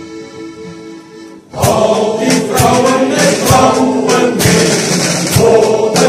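A men's choir singing with a drum kit keeping the beat. A quieter passage of held instrumental notes gives way, about a second and a half in, to the full choir and drums coming in loudly, with regular drum and cymbal hits under the singing.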